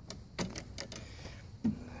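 Several sharp plastic clicks and knocks from the handle knob and bracket of a Kobalt 80V mower as it is worked loose to adjust the handle.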